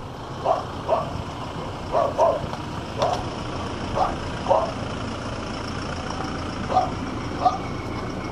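Toyota Land Cruiser SUV rolling slowly in, its engine a steady low rumble, while a dog barks about nine times at irregular intervals, several barks coming in quick pairs.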